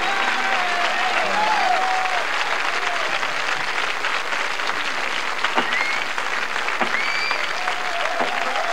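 Concert audience applauding and cheering after a song ends, with a couple of short rising whistles in the second half.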